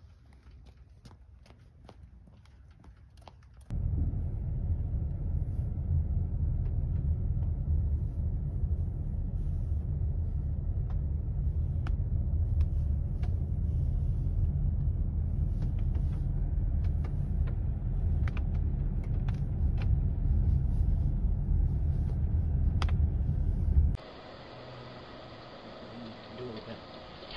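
Steady low rumble of a car driving along a road, heard from inside the cabin, cutting in suddenly about four seconds in and stopping abruptly near the end, with scattered sharp ticks over it. Before it there is only quiet outdoor background with a few faint clicks, and after it a quieter steady hiss.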